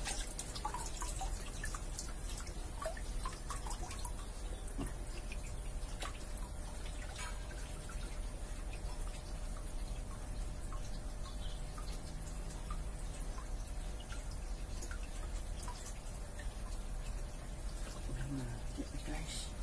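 Small drips and light splashes of water as hands and a plastic basket move in a shallow pond, with scattered faint clicks, over a steady low hum.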